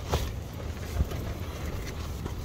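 Wind gusting against the tent, a steady low rumble with two short thumps, the louder one about a second in.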